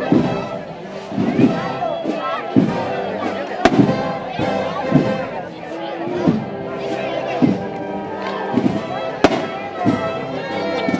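A processional band plays a slow march, with sustained brass-like tones over a bass drum beat about every second and a quarter. Two sharp cracks cut through, one about four seconds in and one near the end.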